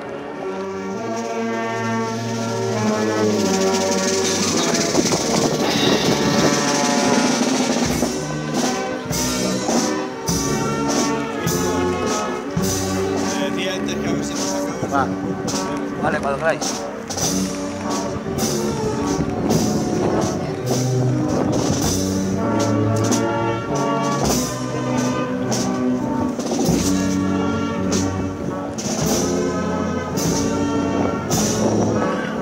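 Brass band playing a slow processional march, sustained chords swelling at first, with drums coming in about eight seconds in and keeping a steady beat.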